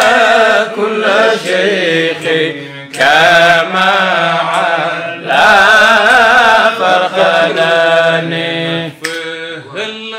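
Male voices chanting an Arabic Sufi devotional refrain with a wavering, ornamented melody. The chant breaks briefly about three seconds in and again near five seconds, and is quieter near the end.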